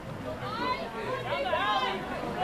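Voices calling out over one another, words indistinct, louder from about half a second in.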